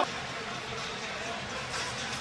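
Steady crowd noise from a basketball arena, an even background murmur with no single standout event.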